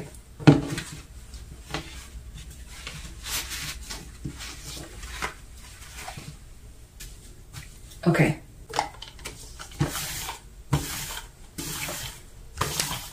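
Hands handling and smoothing a polyester t-shirt and a flat piece of cardboard slid inside it: soft, irregular fabric rustles and paper-like scrapes. Near the end a lint roller starts going over the shirt.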